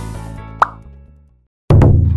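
Background music fading out, with a short upward 'bloop' sound effect about half a second in. After a moment of silence, a new piece of music cuts in loudly near the end.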